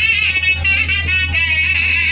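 Loud music played through a large outdoor loudspeaker stack: a high, wavering melody line over a steady deep bass hum.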